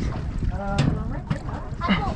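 Indistinct voices talking, over a steady low rumble of wind on the microphone.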